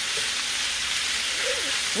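Thin-sliced sirloin steak sizzling steadily in a hot skillet as it is stirred with a wooden spoon.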